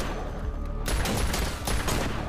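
An exchange of handgun fire: several sharp pistol shots at uneven intervals, over a tense music score.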